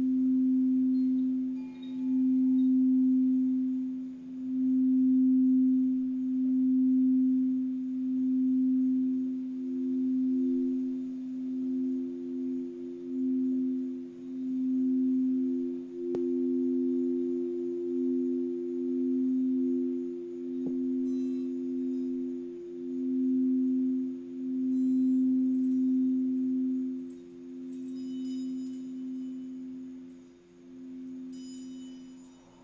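Quartz crystal singing bowls sung with a wand around the rim: two steady, deep, pure tones that swell and fade every second or two, the higher one coming and going. Faint high tinkles come in near the end.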